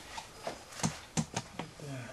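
Caulking gun being handled: four sharp clicks and knocks within about a second.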